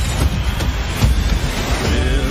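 Loud, dense rumbling noise with a heavy low end, from trailer sound design.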